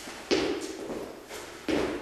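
Single-leg lateral hops on a concrete floor: two landings of athletic shoes, about a second and a half apart, each a sudden thud that fades.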